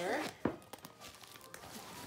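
Zipper being drawn and fabric rustling as the main compartment of a backpack diaper bag is unzipped and its front panel folded open, with a sharp click about half a second in.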